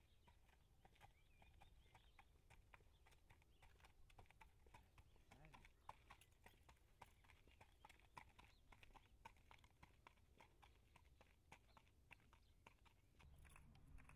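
Faint, irregular hoofbeats of a Thoroughbred colt walking on a paved road, several light clicks a second.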